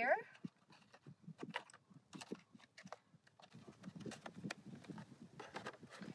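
Light, scattered clicks and taps from a small plastic box and its packaging being handled while a glass ampoule is taken out of a dissolved-oxygen test kit. A soft low rumble comes in about halfway through.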